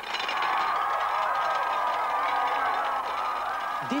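Thousands of washed plates toppling in rows like dominoes, a continuous dense clatter, with a crowd cheering and shouting over it.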